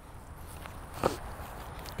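Faint footsteps of players running and shuffling on grass, with one brief faint voice about a second in.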